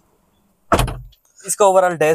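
Driver's door of a Kia Seltos being shut from inside the cabin: one loud, deep thud about three-quarters of a second in.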